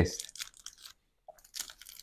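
Faint, scattered crunching of a crisp Kit Kat wafer bar being chewed close to a lapel mic, fading to near silence midway before a few more crunches near the end.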